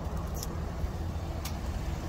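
A vehicle engine idling, a steady low hum, with a couple of faint clicks.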